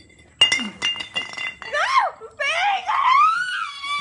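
A sudden clink that rings on briefly at one high pitch, followed by a high-pitched voice wailing in long rising and falling glides.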